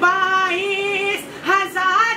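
A young man singing an Urdu manqabat in praise of Imam Hussain solo in a high voice, holding one long note for about a second, then breaking off briefly and starting a new phrase that bends upward near the end.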